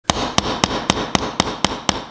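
Hammer striking the head of a steel nail held upright on a wooden block: rapid, evenly spaced blows, about four a second.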